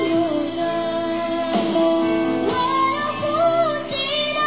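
A child singing a Malay song over instrumental backing, holding long notes whose pitch wavers near the end.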